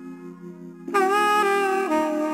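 Background music of sustained melodic notes, with a louder held note coming in about a second in and stepping down in pitch near the end.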